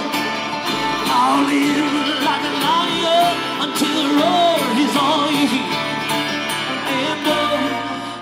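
Live bluegrass band playing: acoustic guitar, upright bass, mandolin and five-string banjo together, amplified through a stage PA.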